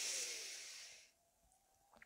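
A woman's audible breath close to a headset microphone: a soft hiss that fades out about a second in.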